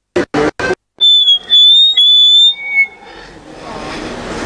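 A loud, high whistling tone held for about a second and a half with two brief breaks, then a short lower note. Afterwards a noisy outdoor background fades in.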